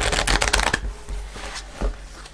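A deck of cards being shuffled by hand on a cloth-covered table: a quick run of crisp card-edge flutters in the first second, then softer sliding as the cards are pushed together, with one more tap near the end.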